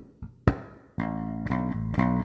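Electric bass guitar playing, with sharp percussive hits, then a held bass note ringing from about a second in.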